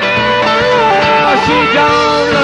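Live rock band playing an instrumental passage: a sustained lead line that bends up and down in pitch over bass and a steady drum beat.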